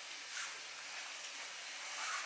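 Quiet room tone: a faint, steady hiss with one soft bump about half a second in.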